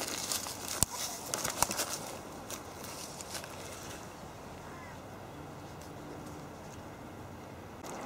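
Small water splashes and a couple of sharp knocks as a model sailing boat with a lead keel is pushed over in a paddling pool and rights itself. Then a quiet outdoor background with a faint bird call near the middle.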